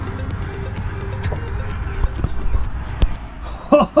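The aircraft's door swinging shut, a sharp knock about three seconds in, over a steady low rumble and background music; a man's surprised exclamation follows at once.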